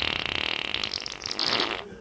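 A long fart: a fast, rattling buzz that holds for nearly two seconds and fades out near the end.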